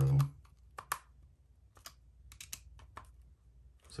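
Light, scattered clicks of a hex driver working screws into the plastic chassis brace of a 1/16-scale RC truck, about half a dozen irregular ticks with quiet between them.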